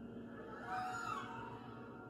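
Grand piano strings stroked lengthwise with the fingertips, giving a wailing swell that rises and fades about a second in. Lower strings keep ringing underneath.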